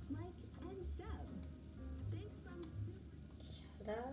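Speech-like voices over background music with a low, pulsing bass, played back from a video.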